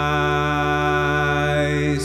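Slow song: a man's voice holds one long sung note, wavering slightly, over a steady low drone.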